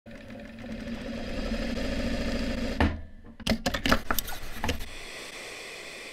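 Sewing machine running steadily for nearly three seconds and stopping abruptly. About half a second later comes a quick run of sharp clicks.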